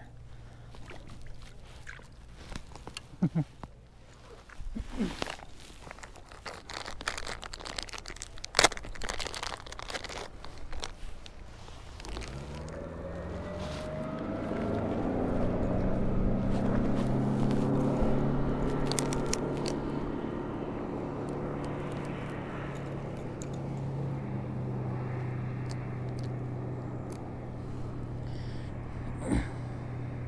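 Scattered clicks and small knocks for the first dozen seconds, then a motorboat engine comes in, rising in pitch and swelling to its loudest about halfway through before running on steadily.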